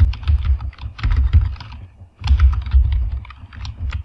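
Typing on a computer keyboard: two quick runs of keystrokes with a short pause about halfway.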